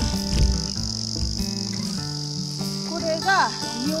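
A steady, high-pitched chorus of insects chirring, over soft background music.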